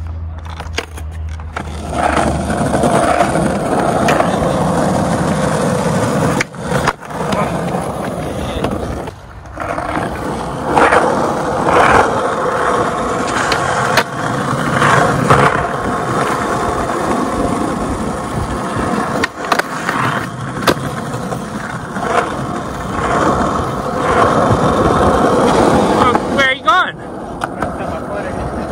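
Skateboard wheels rolling steadily over pavement, broken by several sharp clacks of the board hitting the ground.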